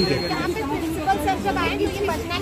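Speech only: several voices chattering and talking over one another.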